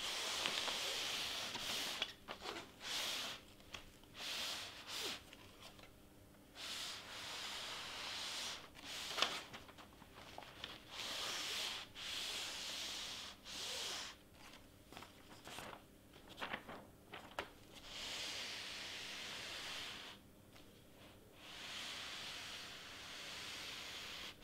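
Cricut EasyPress heat press slid back and forth over a Teflon sheet on a sweatshirt, pressing iron-on heat transfer vinyl down: a faint rubbing hiss in a dozen or so strokes, each a second or two long, with short pauses between.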